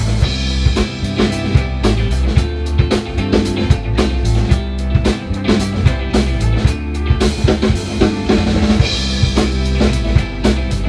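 Live rock band playing a song: drum kit keeping a steady beat with bass drum and snare, under electric guitars and bass guitar.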